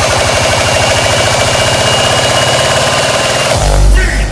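Hard dance track building up: a rapid, evenly repeating roll of distorted low bass hits under dense synth noise. About three and a half seconds in it breaks into one loud, sustained low bass note.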